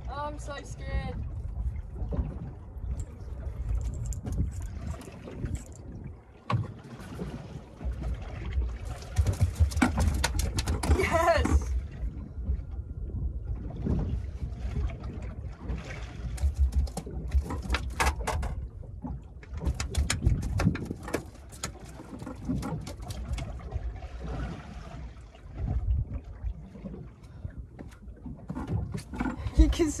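Wind rumble and boat noise, with repeated knocks and rattles on the boat as a freshly caught snapper is landed and handled. An excited voice exclaims right at the start and again about ten seconds in.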